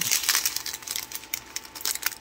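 Small clear plastic bags of diamond-painting drills crinkling as they are handled, busiest in the first half second, then thinning to scattered crackles.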